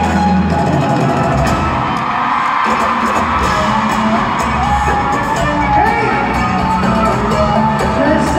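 A live band playing through an arena sound system, with a guitar among the instruments, heard over the audience, which whoops and cheers.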